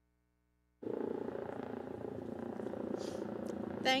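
Near silence, then a little under a second in a steady low background noise of a large room cuts in suddenly, as the live audio feed opens. A voice begins right at the end.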